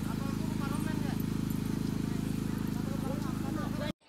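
High-voltage transmission tower and its power lines giving a steady, low electrical buzz, with faint distant voices underneath. The buzz cuts off abruptly just before the end.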